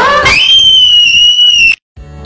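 A startled, very high-pitched scream that shoots up in pitch, holds, then cuts off abruptly near the end.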